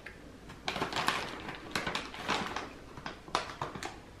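Crinkling and rustling of a candy bag as it is handled and a gummy is pulled out, in short, irregular spells.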